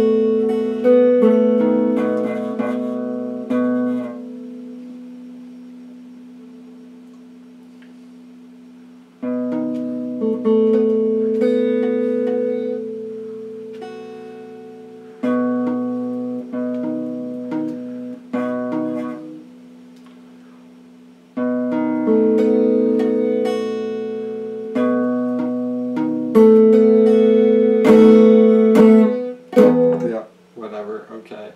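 Clean electric guitar picking out chords note by note and letting them ring, in four phrases: the first dies away slowly from about four seconds in, and the next starts around nine seconds in. Near the end come a few quick scratchy, muted strokes.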